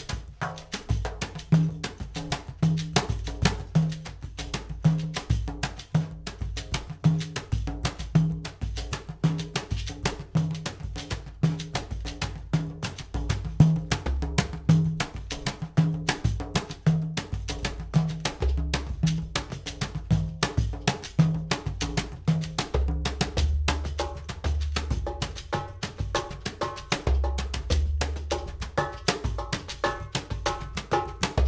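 Hand-percussion duo playing a groove in seven: an LP plenera frame drum swept and tapped with a bristle brush and struck by hand, over djembes. A steady, evenly spaced pitched drum note runs through the groove, and deep djembe bass strokes grow heavier in the second half.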